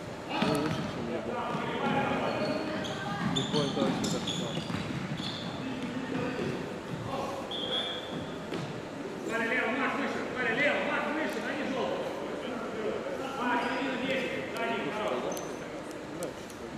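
Futsal ball being kicked and bouncing on a wooden sports-hall floor, in short scattered thuds, with voices calling out in the echoing hall, most clearly around the middle and near the end.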